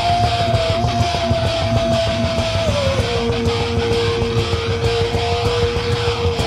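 Heavy metal music with distorted electric guitars and drums keeping a steady beat, under one long held high note that drops to a lower held note about halfway through.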